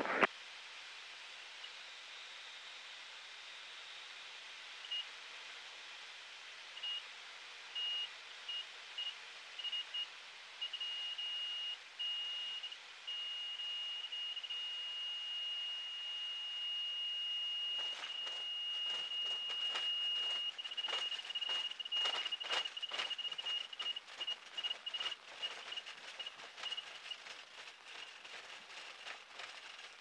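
Light aircraft's stall-warning beep heard through the cockpit intercom during a grass-strip landing. The high steady tone first comes in short pulses, turns continuous as the aircraft slows onto the runway, then breaks up again. From about two-thirds of the way through, irregular knocks and rattles come from the wheels rolling over rough grass.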